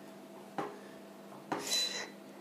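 A metal fork pricking pastry dough in a baking dish, its tines knocking against the dish: a short tap about half a second in, then another knock near the end with a brief metallic clink.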